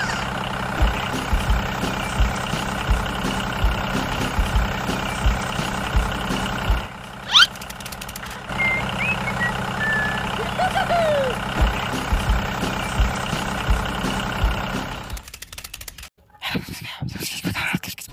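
Tractor engine running steadily with soft, regular knocks, and a few short chirps on top. It cuts off about three seconds before the end.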